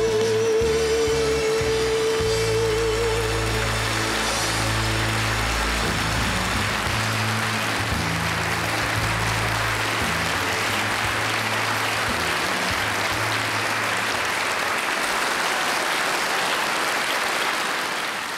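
A woman's last held sung note, wavering with vibrato over the band's closing chord of a gospel ballad, ends about three seconds in. An audience's applause then builds and continues steadily.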